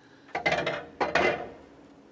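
Snooker balls clicking against each other on the table, in two short clusters of sharp knocks about half a second apart.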